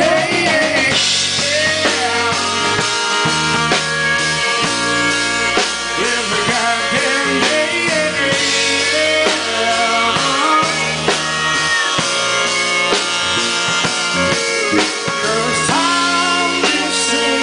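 Live rock band playing an instrumental passage: electric guitars, bass and drum kit, with a steel guitar sliding up and down between notes.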